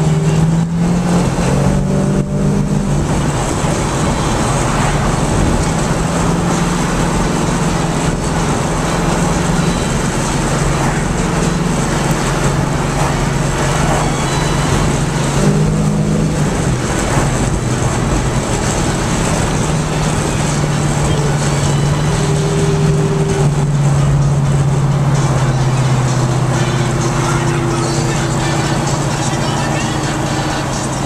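Dodge Dart GT engine and exhaust at steady highway cruise, a continuous low drone that shifts in pitch a few times, with road and wind noise, heard from inside the cabin. The engine sounds healthy and is running strong.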